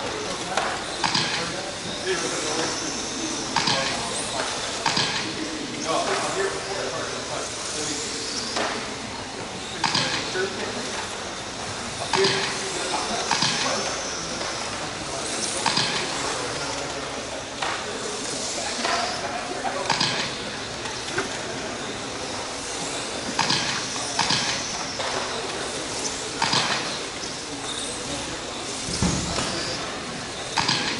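1/12-scale electric RC pan cars racing on a carpet track: high motor whines that rise and fall as the cars accelerate down the straights and brake into the corners, every few seconds, with short sharp sounds of tyres and chassis in between.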